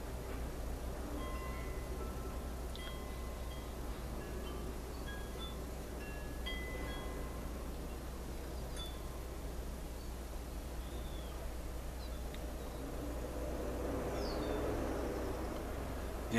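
Wind chimes ringing sporadically: short single notes at several different pitches, mostly in the first half, over a steady background hiss and low hum. A short falling whistle comes near the end.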